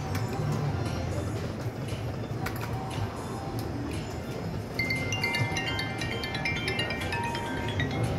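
Bell Link slot machine playing its electronic game sounds over a low steady casino background. From about five seconds in comes a quick run of bright chiming tones as the spinning reels come to a stop and bell symbols land.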